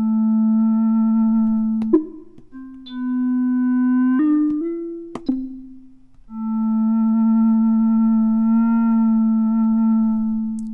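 Synthesized tone from the Orphion iPad music app played on its A3 pad. The note is held for about two seconds, then a few short notes step up and down in pitch with a couple of tap clicks, then the A3 note is held again for about four seconds, wavering slightly in pitch near its end.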